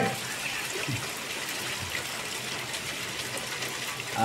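Steady rain falling on wet, puddled ground: an even, unbroken hiss.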